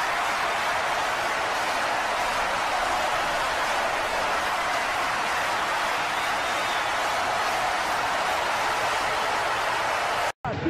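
A loud, steady rushing noise with no speech, even in level throughout and strongest in the middle and upper range.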